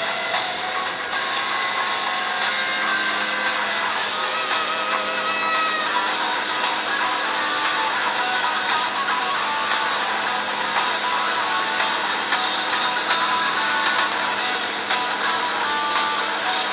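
Recorded rock band music with guitar playing back through a computer's speakers.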